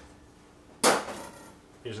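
A single sharp clack of a knife being handled against a hard kitchen surface as another knife is taken up, dying away over about half a second.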